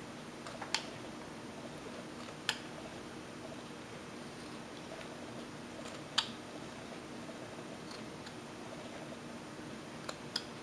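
Small carving knife paring chips off a wooden figure, with three short sharp clicks as cuts snap through the wood, over a faint steady hum.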